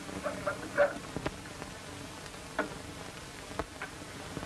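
Steady hiss of an old 1930s film soundtrack, with a few faint clicks scattered through it.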